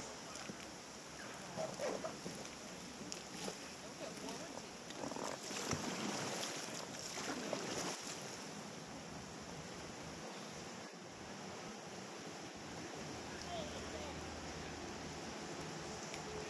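Water sloshing and lapping around an inflatable whitewater raft on calm river water, with faint voices in the background.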